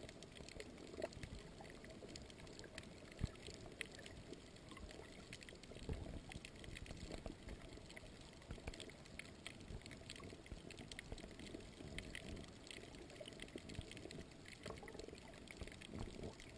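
Faint, muffled water noise picked up by a camera held underwater while snorkeling, with scattered light clicks and a few short knocks, the loudest about three seconds in.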